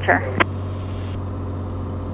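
Cessna 182 Skylane's six-cylinder piston engine droning steadily on final approach to land, a low even hum in the cockpit.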